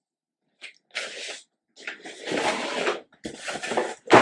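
Cardboard box and packaging being handled during an unboxing: three bursts of rustling and scraping, each half a second to a second long, with short pauses between.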